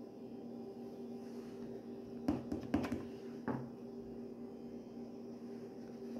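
Quiet room with a steady low hum and three or four soft clicks around the middle, small handling sounds while makeup is brushed on.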